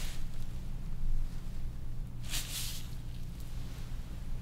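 Soft rustle of gloved hands and fabric as a bent knee is gripped and moved, with one brief swish a little past halfway, over a low steady hum.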